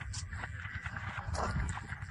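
Footsteps crunching and scuffing irregularly on dry, sandy, stony ground, under a low rumble of wind on the microphone.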